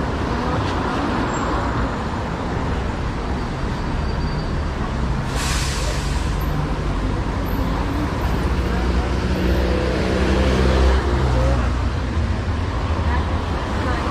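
Traffic on a wet city boulevard: cars and trams passing with a steady low rumble and the hiss of tyres on wet asphalt. A short sharp hiss comes about five seconds in, and a vehicle's pitched motor hum swells and fades in the second half.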